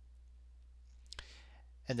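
Quiet room tone with a low steady hum; about a second in, a single sharp click, then a short intake of breath just before a man starts to speak near the end.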